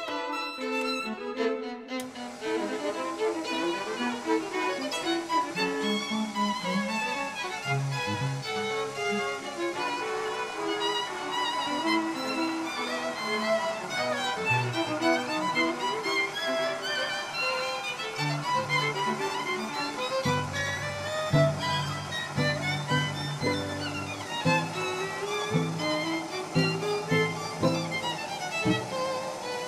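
Background music: a string trio of violin, viola and cello playing a classical divertimento, with the lower strings coming in more strongly about two-thirds of the way through.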